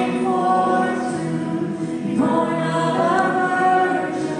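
Worship team singing a worship song in harmony, mostly women's voices, on long held notes; a new phrase begins about two seconds in.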